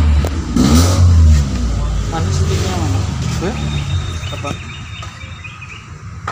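Muffled voices in the background over a low, steady rumble that fades after about four seconds.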